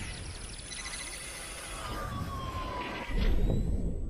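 Synthetic sound effects of an animated logo outro: a thin high tone and a slowly falling whistle-like glide, then a deep boom about three seconds in that fades away.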